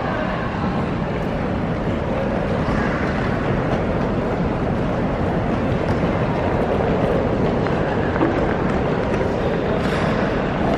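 Wheels of hard-shell suitcases rolling over a tiled floor: a steady, even rumble.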